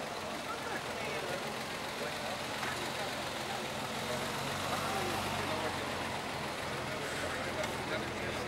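Mercedes-Benz W113 SL 'Pagoda' straight-six engine idling steadily, a little louder from about halfway through, under the chatter of a crowd.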